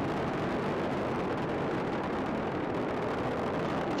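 Space shuttle's solid rocket boosters and three main engines firing during ascent: a steady, even rush of rocket noise with no breaks or changes.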